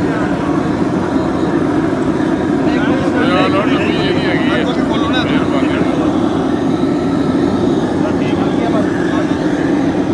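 LPG gas burners firing into the base of a brick kiln: a loud, steady roar of gas and flame. Voices talk over it briefly in the middle.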